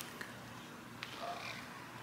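Quiet backyard ambience: a faint, even outdoor background with a couple of faint clicks, one just after the start and one about a second in.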